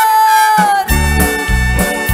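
A woman holds a sung note that sinks slightly and ends about half a second in. Just under a second in, a live band strikes up with a bass-and-drum beat and two trumpets playing held notes.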